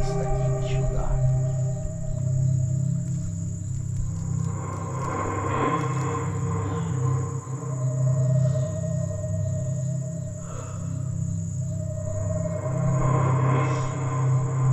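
Dark ambient background music: a steady low drone with long sustained tones swelling and fading. Underneath runs a steady high-pitched trill of night insects such as crickets.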